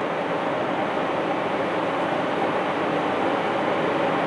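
Steady, even background noise with nothing standing out: room tone.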